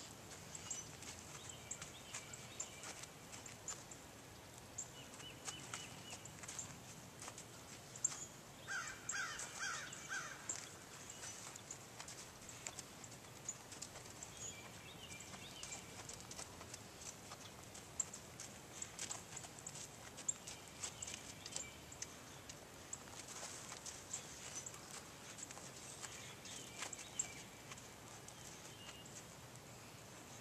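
Faint outdoor ambience: a ridden horse's hooves fall on the sand of a round pen as faint, irregular soft clicks, and birds call now and then, loudest in a short run of calls about nine seconds in.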